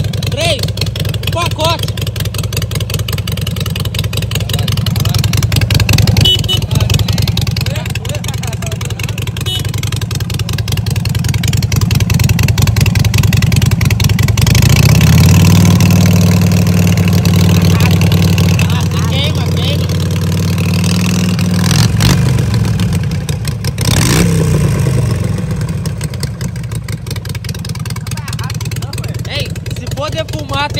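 Harley-Davidson air-cooled V-twin motorcycle engine idling with its lumpy beat. About halfway through it is revved up and held at higher revs for several seconds, then drops back to idle, followed by one short blip of the throttle.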